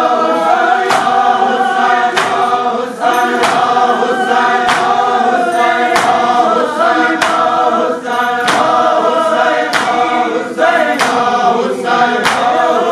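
A crowd of men chanting a nauha (mourning lament) in unison. Sharp, evenly spaced slaps of hands beating on chests (matam) keep time, about three strokes every two seconds.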